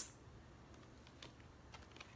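Near silence: room tone with a few faint clicks from a paper booklet being handled.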